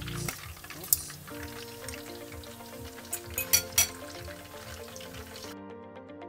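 Pork belly deep-frying in hot oil, sizzling, with a few sharp metal clinks from forks or lid against the steel pot in the middle. Background music comes in about a second in, and near the end the frying sound cuts off suddenly, leaving only the music.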